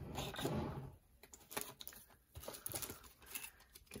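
Faint rustling and small clicks of trading cards and card-storage supplies being handled, loudest in about the first second, then sparse light ticks.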